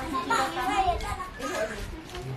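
Children's voices in the background, talking and playing.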